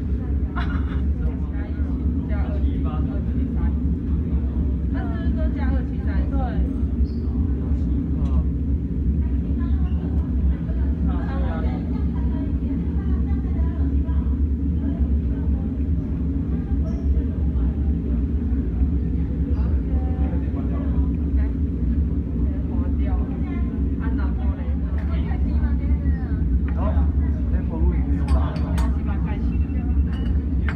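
A loud, steady low machine hum, with indistinct voices talking in the background now and then.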